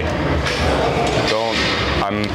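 Busy gym room noise: a steady background din with a short burst of voice about halfway through and light metallic clinks.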